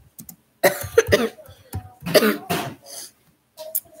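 A young girl coughing and clearing her throat: two bouts about a second and a half apart, then a few faint throat sounds near the end.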